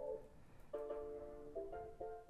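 Faint sampled music auditioned from a laptop: held, sustained chords, a new chord starting about two-thirds of a second in and changing again near the end.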